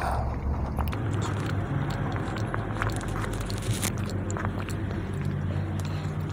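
Sipping a coke float through a plastic straw, with small clicks and handling sounds as the cup is set down, over a steady low hum.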